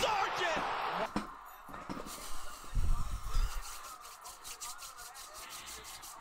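The end of a man's excited shout, then a sharp knock about a second in and a heavier, dull low thud around three seconds in, over faint background noise.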